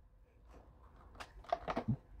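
Near silence, then from a little over a second in, faint clicks and rustling of the cardboard packaging as a perforated flap on a toy's blind-box display is handled and pulled open.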